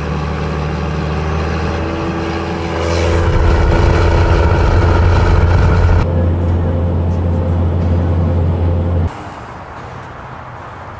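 Engine and road noise heard inside a moving vehicle's cabin: a steady low drone that grows louder about three seconds in. It cuts off suddenly about a second before the end, giving way to a much quieter outdoor background.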